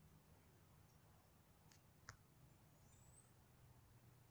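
Near silence: a faint low hum, with a couple of faint clicks about two seconds in.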